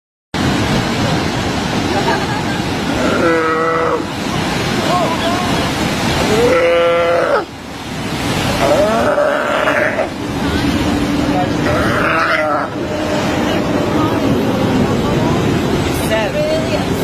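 Mother sea lion giving a series of long, bleating cries every few seconds over her dead pup; the loudest comes about halfway through.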